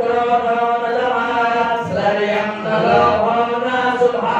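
A male priest chanting Sanskrit mantras into a microphone in a steady recitation tone, his voice holding each note with only small rises and falls in pitch.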